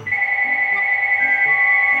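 Mobile phone ringing: a loud electronic trilling ring on two steady pitches that starts suddenly and stops near the end as the phone is picked up.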